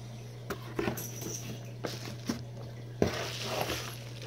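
Packaging being handled in a cardboard box: a few light clicks and taps, then plastic bubble wrap rustling as it is lifted out, from about three seconds in. A low steady hum runs underneath.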